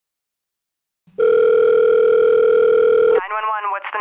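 A steady telephone line tone, held for about two seconds after a second of silence, that cuts off suddenly as an emergency dispatcher's voice comes on the line.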